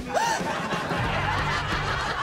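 Laugh track: several people snickering and chuckling, over light background music.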